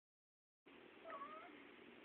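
A house cat's single short, faint meow, about a second in.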